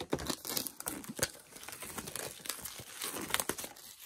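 Clear plastic shrink-wrap being torn and peeled off a metal steelbook disc case, crinkling and crackling in quick sharp bursts.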